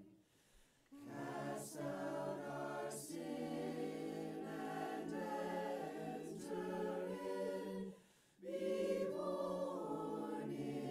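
Small mixed choir of men and women singing a cappella in harmony. The singing breaks off briefly just after the start and again about eight seconds in, between phrases.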